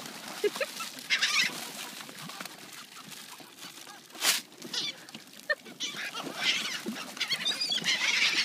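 A flock of gulls in a feeding frenzy, calling harshly in bursts: about a second in, again around six and a half seconds, and most densely near the end. A brief sharp rush of noise breaks in about four seconds in.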